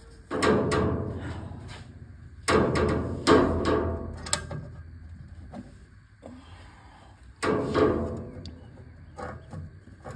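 A few sudden knocks, each trailing off over a second or so, the loudest about a third of the way in, with quieter stretches between.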